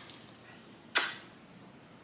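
A single camera shutter click about a second in, against faint room tone.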